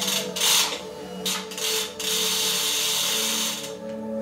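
Road bike drivetrain on a work stand being turned by hand: four short bursts of mechanical noise, then a steady run of about a second and a half as the chain and rear wheel spin.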